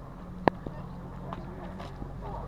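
A steady low drone with faint murmuring voices, broken by a sharp knock about half a second in and a few lighter clicks after it.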